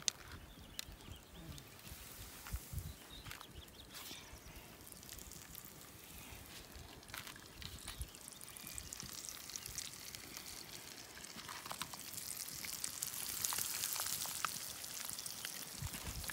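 Flour-coated brook trout frying in hot bacon grease in a pan: a faint hiss that builds to a steady sizzle in the last few seconds as the fish go in. Before that there are only a few light handling clicks.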